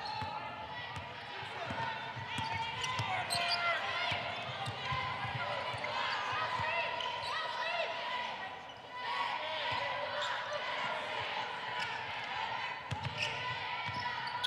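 Basketball dribbled on a hardwood court in a large arena, with players' and spectators' voices throughout.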